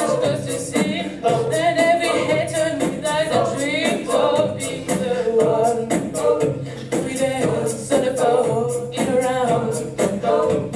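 An a cappella vocal group singing: a woman's lead voice over the group's backing harmonies, with a steady beat running underneath.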